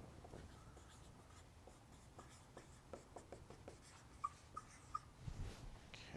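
Dry-erase marker writing on a whiteboard: faint quick scratching strokes, with three short squeaks about two-thirds of the way through.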